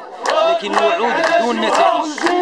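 Protesters chanting a slogan in Moroccan Arabic, with one man's voice close by and loudest.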